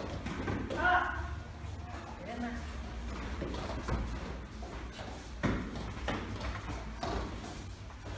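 Thuds of children's taekwondo sparring on foam mats, with two sharp knocks about five and a half and seven seconds in. Background voices run underneath, one raised about a second in.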